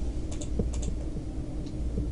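Scattered, irregular soft clicks over a steady low hum with a faint steady tone.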